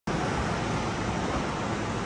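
Steady rushing noise of strong storm wind and ocean surf, an even roar with no distinct events.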